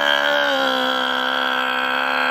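A man's voice holding one long, loud wailed note at a steady pitch, dipping slightly about half a second in.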